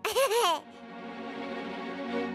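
A small child's giggle in the first half second, two quick high laughs that rise and fall. Soft string music then carries on.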